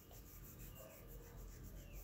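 Near silence: faint room tone with a low hum and light hiss.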